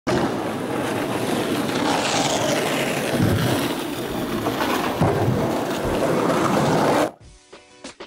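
A steady, loud rushing noise with no clear tones, cut off suddenly about seven seconds in, when a music track with a regular beat starts.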